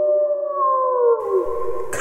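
A dog howl sound effect: one long held howl that sags in pitch and dies away about one and a half seconds in.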